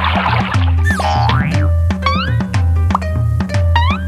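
Bouncy cartoon background music with a steady bass beat, a splash-like hiss in the first second, and repeated springy rising 'boing' effects from about halfway through.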